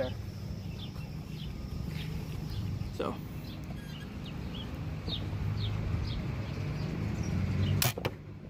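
A compound crossbow fired once near the end: a single sharp crack as the string releases and the bolt leaves. Under it runs a steady low drone from a distant lawnmower engine.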